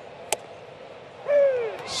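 A single sharp pop of a pitched baseball hitting the catcher's mitt on a strikeout pitch, about a third of a second in, over a low ballpark crowd murmur. A loud voice calls out with a falling pitch near the end.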